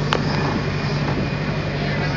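Towed ride vehicle rolling along a taxiway, heard from inside the helicopter shell: a steady low engine hum over an even rumble of rolling noise, with one sharp click just after the start.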